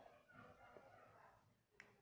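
Near silence: a pause in the narration, with one faint short click near the end.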